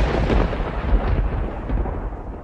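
A loud, deep rolling rumble whose higher tones slowly die away.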